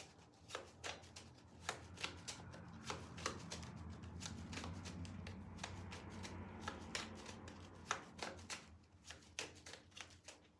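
A deck of tarot cards being shuffled by hand: soft, irregular card slaps and flicks, with a longer stretch of continuous rustling through the middle.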